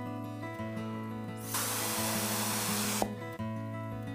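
Mouth atomizer blown to spray a fine mist of watercolor onto the paper: one hissing burst starting about a second and a half in and lasting about a second and a half, over soft background music.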